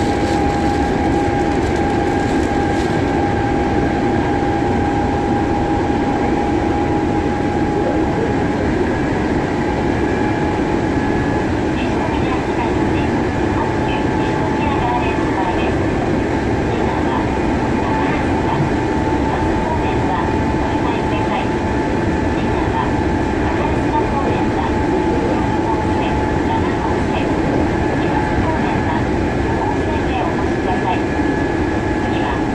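Hankyu 7000 series electric train running at speed, heard from inside the car: a steady rumble of wheels and running gear with a steady high whine over it. Light clicks and ticks join in from about twelve seconds in.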